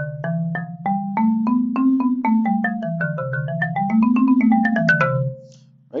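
Marimba played with yarn mallets: a C major scale on the white notes, run up and down at about four notes a second, each bar ringing briefly. It ends in a quick little flourish of higher notes and stops a little after five seconds in.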